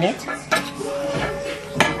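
Metal spoon scraping and knocking against the pot while thick, stiff cornmeal is turned over, with a sharp clank near the end.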